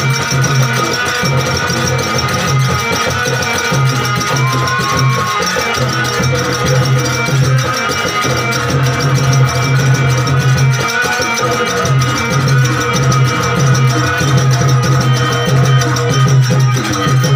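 Live music on a harmonium, holding steady notes over a fast, even percussion rhythm.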